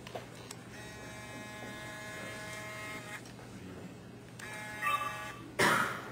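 Grand piano played by a child: a chord held for about two seconds, then another struck about four and a half seconds in and left to ring. Near the end, a short, loud noise burst.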